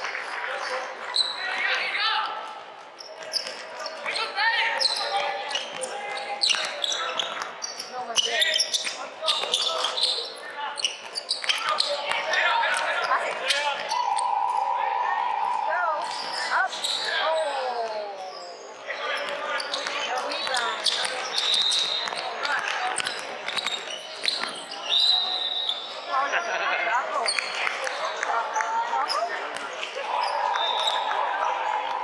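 Basketball dribbled and bouncing on a wooden court, with many sharp bounces, short squeaks from sneakers, and shouting voices ringing in a large indoor hall.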